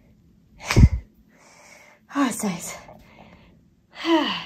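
A woman sneezes once, loudly, a little under a second in, then makes a brief voiced sound about two seconds in. She is getting over a cold.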